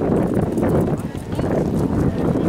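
Voices of a yosakoi dance troupe calling out together over a clatter of short sharp clicks from the dancers as they move.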